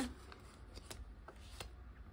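Soft rustling of a clear plastic binder pouch and a paper challenge card being handled, with a few light clicks through the middle.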